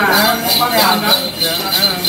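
A cluster of small jingle bells, the kind a Then master shakes during the ritual, ringing in a steady pulsing rhythm, with a person's voice over it.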